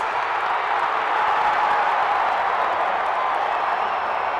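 Steady crowd applause, an even rushing clatter of many hands with no single claps standing out.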